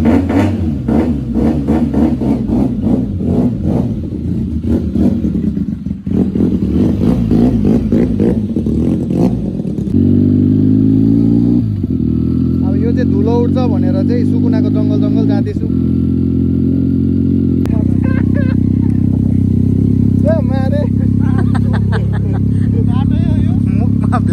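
Motorcycle engine running and revving as the bike is ridden, its pitch climbing and then dropping about ten seconds in, with a voice heard over it.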